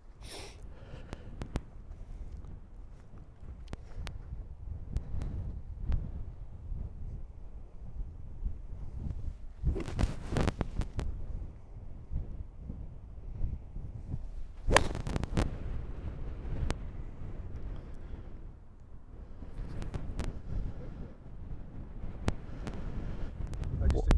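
Wind buffeting the microphone throughout, and about 15 seconds in a single sharp crack of a hickory-shafted fairway wood striking a golf ball off the tee. A few softer clicks come before it.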